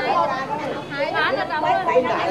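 Several people chatting, their voices overlapping.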